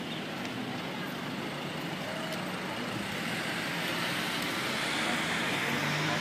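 Steady road-traffic noise from vehicles at an airport kerbside, swelling a little in the second half as if a vehicle passes.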